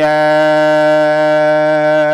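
A man chanting an Arabic devotional poem (xasiida), holding one long, steady note at a single pitch.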